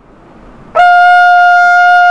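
A rotary-valve trumpet sounding one high note that starts about three quarters of a second in and is held steady and loud.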